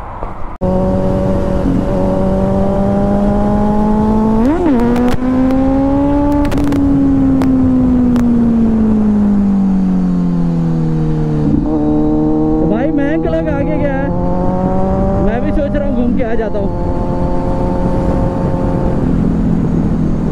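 Kawasaki Z900 inline-four motorcycle engine heard from the rider's seat over wind rush, riding under way on the open road. The engine note climbs and blips briefly about four seconds in, then falls away steadily as the throttle is eased. About eleven seconds in it steps up and holds steady, with a short warbling sound twice near the end.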